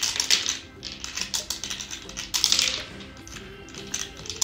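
Background music with spells of rapid clicking and rattling: a plastic M&M's character candy dispenser being pressed, its mechanism clicking and candy-coated chocolates rattling through it.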